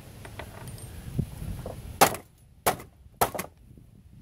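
A light click, then three sharp metal knocks about half a second apart in the second half, as the sheet-metal cover of a DirecTV receiver is struck and worked loose from its chassis.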